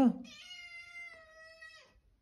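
Young tabby cat giving one long, steady meow of about a second and a half that drops slightly at the end, in reply to being called.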